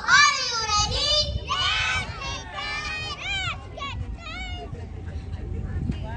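Young children's high-pitched voices shouting and calling out together, loudest in the first two seconds, then thinning to shorter calls.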